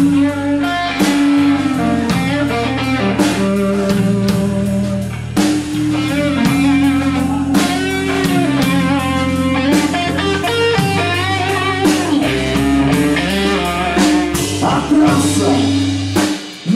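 Live blues-rock band in an instrumental break: an electric guitar plays a lead line with bent, wavering notes over a steady drum beat.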